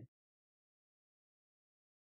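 Near silence: a blank sound track with no audible sound.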